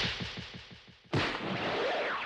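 Two heavy impact sound effects from an anime fight, each a blow landing. The first booms at the start and dies away over about a second; the second hits just after a second in and trails off.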